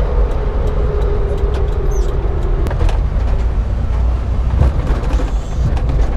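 Honda mini truck's small engine running as it drives, heard from inside the cab as a steady low rumble with a hum that sinks slightly lower over the first few seconds. Occasional light clicks sound through it.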